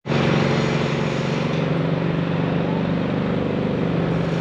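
A motor engine running steadily at close range, a low, even hum that does not change in pitch, starting abruptly.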